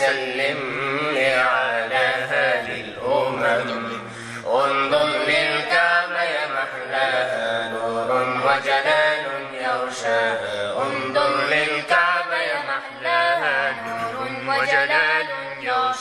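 Arabic nasheed: devotional singing in ornamented, gliding melodic lines, voices layered over a low held note.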